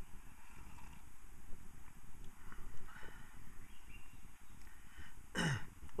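A man sipping hot pine-needle tea from a metal camp cup, with a steady low rush of breeze on the microphone; about five seconds in comes a short vocal sound that falls in pitch, an "ahh" after the sip.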